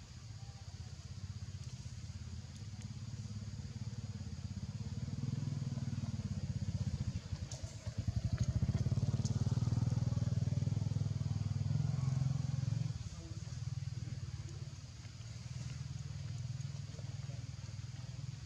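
Low engine rumble of a motor vehicle such as a motorcycle. It builds up, is loudest in the middle for about five seconds, then eases off.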